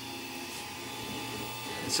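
3D printer running mid-print: a steady low hum and whir from its cooling fan and motors.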